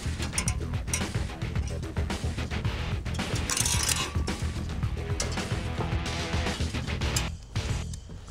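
Irregular metallic clicks and scrapes of a pick and pliers working steel clips onto the spring wire of an old bucket-seat frame, with a longer scrape a little before halfway.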